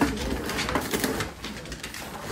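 French bulldogs grunting and snuffling while nosing and tugging at a toy, with a few light clicks and rustles.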